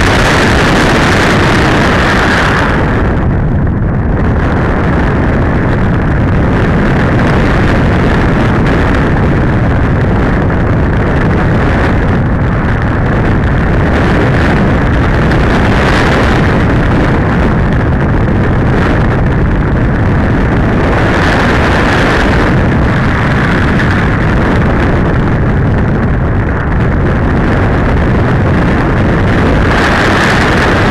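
Loud, steady rush of air buffeting the onboard camera's microphone as the RC glider flies, with the hiss swelling and easing several times.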